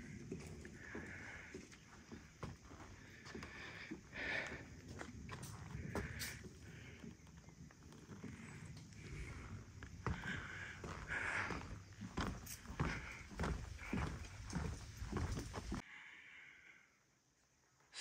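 Faint, irregular footsteps on a wooden boardwalk, cutting off suddenly shortly before the end.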